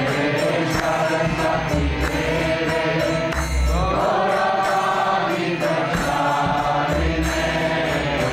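Devotional chanting sung to music, with a steady beat of percussion under the voice.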